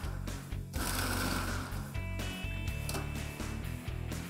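Inalsa food processor motor running with pea pods churning in water in its jar, beating the peas loose from their pods, with background music over it.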